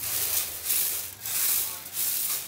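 Dry maize kernels rustling and rattling against each other and a metal tray as hands sweep and scoop through them, in several surges. The grain is being worked by hand in the tray to clean out dirt before milling.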